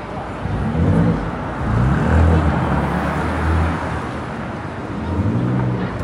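A motor vehicle's engine running close by, a low hum that rises in pitch as it accelerates about half a second in and again near the end, over steady street traffic noise.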